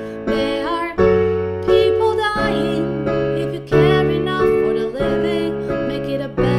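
Digital piano playing sustained chords, a new chord struck roughly every second, with a woman singing over them.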